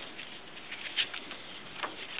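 Paper pages of a handmade book being handled and turned, soft rustling with a couple of sharper paper flicks, about a second in and again near the end.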